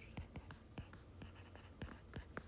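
Faint tapping and scratching of a stylus writing on a tablet screen, a few light ticks spread through the stretch.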